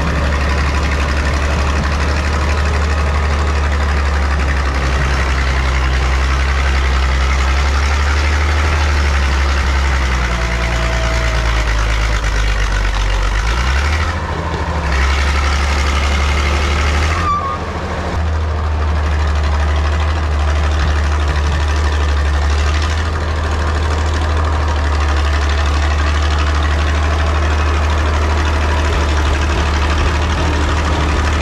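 Caterpillar D6 9U crawler dozer's diesel engine running loud and steady while the machine works, its note shifting for a few seconds around the middle.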